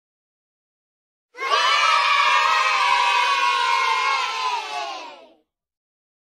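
A group of voices, children's by the sound, cheering in one long shout that drifts slightly down in pitch and fades out. It starts after about a second and a half of silence and has died away well before the end.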